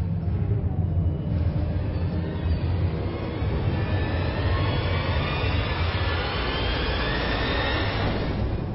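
Trailer sound design: a heavy low rumble under a rising swell that climbs steadily in pitch through the second half, building tension.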